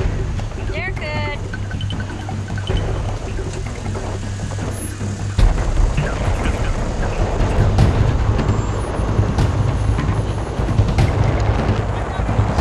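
Jeep Wrangler engine running at low revs as it crawls over a slickrock ledge, getting louder and rougher about five seconds in as it is given throttle. A brief voice call comes about a second in.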